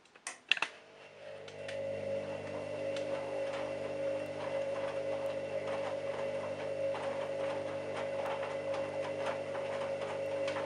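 A few sharp clicks, then about a second in the drum motor of a Candy Smart Touch front-loading washing machine starts and runs steadily, turning the drum for the wash now that the load-weighing stage is done. It is a steady hum with a clear tone, with faint irregular ticking over it.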